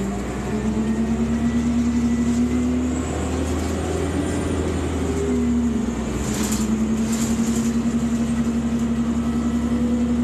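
Transit bus with a Cummins Westport ISC-280 engine and ZF Ecomat automatic transmission, pulling away and accelerating, heard from inside the cabin. A steady whine and low rumble, its pitch climbing and then dropping back about three seconds in and again about six seconds in, with a brief rattle or two in between.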